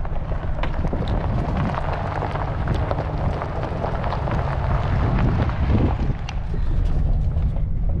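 Pickup truck rolling slowly over a gravel road, heard from inside the cab: a steady low engine and road rumble with the crunch and patter of gravel under the tyres.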